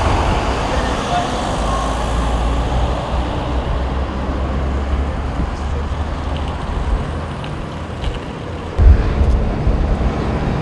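Road traffic noise: passing vehicles with a steady low engine rumble. A sudden loud low thump comes near the end.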